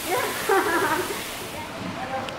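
Spa shower jets spraying water, a steady hiss that fades out about one and a half seconds in, with quiet voices under it.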